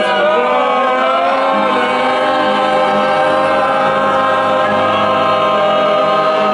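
A group of voices singing together, holding long sustained notes in chorus.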